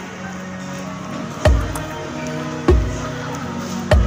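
Background music: sustained tones over a slow, deep beat that strikes three times, about a second and a quarter apart.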